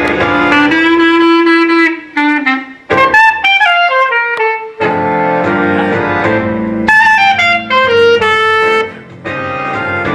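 Instrumental music: a single melody, sax-like in tone, plays held notes and falling runs over sustained lower accompaniment, pausing briefly twice.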